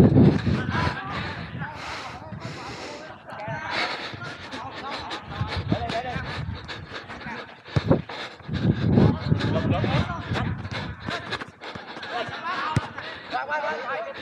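Players shouting and calling to each other during a small-sided football game, with two sharp thuds of the ball being kicked, one about eight seconds in and one near the end.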